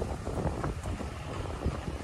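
Wind buffeting the microphone as a low, uneven rumble, over faint street traffic.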